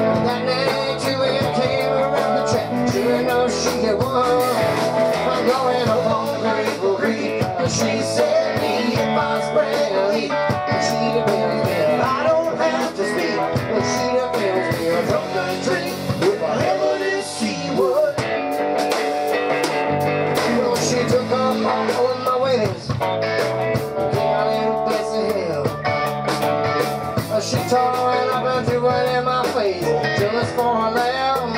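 Live rock band playing a song: electric guitars with bent notes over a drum kit, steady and full throughout.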